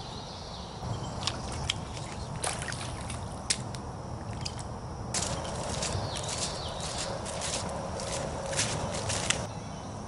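Footsteps through wet woodland undergrowth: irregular snaps and crunches, with a denser stretch of brushing and rustling from about five seconds in until just before the end.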